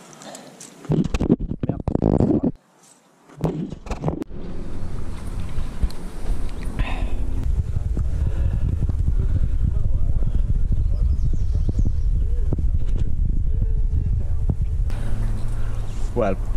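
Wind rumbling steadily on the microphone, with faint, indistinct voices in it; a few knocks and handling sounds come in the first seconds.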